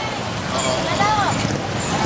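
Steady street traffic noise from passing motor vehicles, with a person's voice briefly in the middle.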